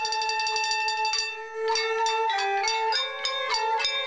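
Traditional Chinese music played on porcelain instruments: a porcelain flute holds a long note, then from about halfway through a quick melody of short, sharp-onset notes joins in.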